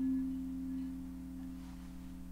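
Sampled kalimba note, middle C, sustaining as one steady tone and slowly fading. A loop over a short stretch of the sample holds the note in a long release instead of letting it die away.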